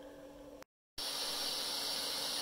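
Power Probe butane soldering iron with its heat-shrink reflector adapter, the butane flame giving a steady hiss as it heats heat-shrink tubing over a solder joint. The hiss starts abruptly about a second in, after faint room tone and a brief gap.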